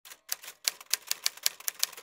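Typewriter keys clacking in a quick, uneven run of about ten sharp strikes, roughly five a second, as a typing sound effect for a text card.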